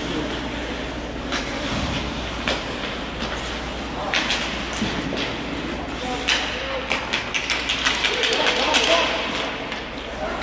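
Ice hockey play in an indoor rink: sticks and puck clacking and skates working the ice as sharp, irregular clicks over a steady arena hum, with voices of players and spectators calling out.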